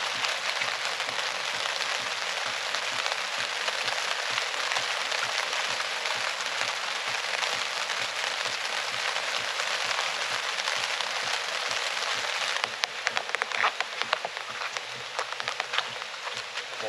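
Steady rain falling, an even hiss full of fine patter. About three-quarters of the way through the hiss drops away and a few scattered clicks and knocks stand out.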